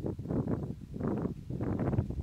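A small motorcycle riding over rough ground: engine and wind noise coming in short, uneven surges.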